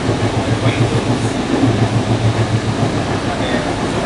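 Running noise inside an Indian Railways double-decker AC express coach at speed: a steady rumble of wheels on rail, with a low hum that throbs a few times a second.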